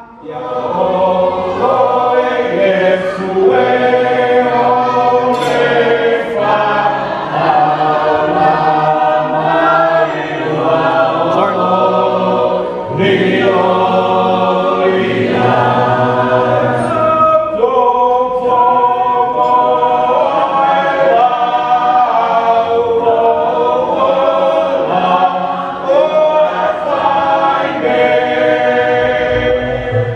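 A choir singing, many voices holding chords together, starting abruptly and running on steadily.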